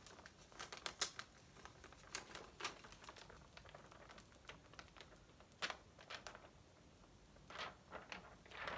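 Faint crinkling and scattered soft clicks of a plastic window-cling sheet being handled, its red gel letters peeled off the backing and pressed onto window glass.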